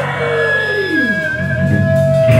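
Live rock band playing loudly on amplified instruments: a note slides down in pitch over about a second while a high steady tone rings above it, then a new note is held from about halfway through.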